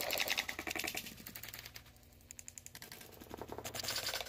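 A rapid, even run of sharp clicks or taps, more than ten a second, strongest in the first second and a half, fading, then picking up again near the end.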